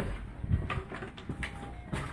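Knocks and rustling from a handheld camera being carried quickly, a few short thumps among low rumbling handling noise.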